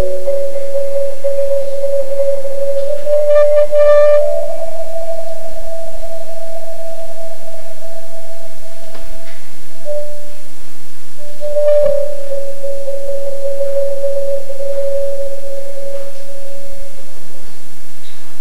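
Concert marimba played with mallets in a slow passage of long rolled notes, one sustained pitch after another in the middle register, stepping up slightly a few seconds in. A sharp mallet click comes a little past the middle, and the held note fades out near the end over steady tape hiss.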